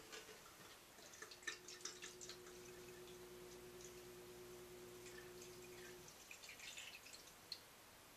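Spiced rum poured from a glass bottle into a glass pitcher, heard faintly: a thin steady trickle with small drips and splashes. The flow stops about six seconds in, followed by a few last drips.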